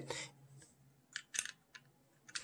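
A few faint, short plastic clicks about a second in, from fingers working the underside of a Corsair Katar Pro Wireless mouse near its small switches.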